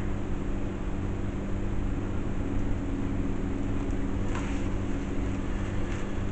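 A steady low mechanical hum with a constant drone, the background noise of the room, with a brief faint rustle a little after four seconds in.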